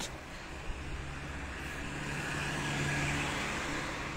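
A motor vehicle going by: a steady engine hum with road noise that grows gradually louder to a peak about three seconds in, then eases off slightly.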